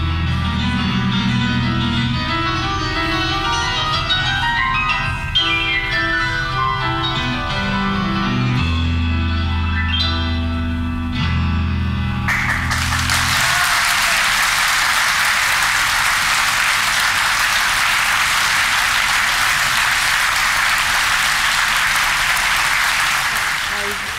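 Grand piano playing live with upright bass underneath, full of fast sweeping runs up and down the keyboard. About halfway through the music cuts off and audience applause takes over, lasting until just before the end.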